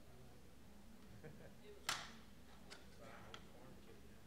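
Near silence with a low room hum, broken by one sharp click or knock about two seconds in, followed by a couple of faint ticks.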